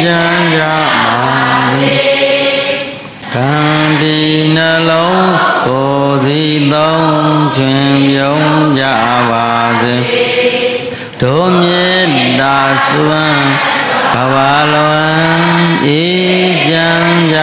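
Buddhist devotional chanting: a melodic recitation of long held and gliding notes, broken by two short breath pauses.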